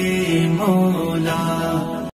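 A voice singing long held notes with a few short bends in pitch, the closing phrase of an Urdu devotional nasheed.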